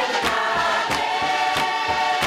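A crowd of men and women singing together in chorus, with hand claps keeping a steady beat of about two to three a second.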